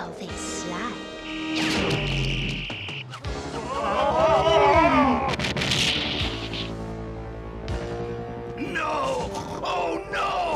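Dramatic cartoon score with synthesized action sound effects for a wall of ice forming: a hissing burst early on, wavering electronic tones midway (the loudest part), another hiss, and falling whistling glides near the end.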